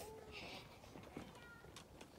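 Near quiet, with faint distant voices and a brief soft hiss about half a second in.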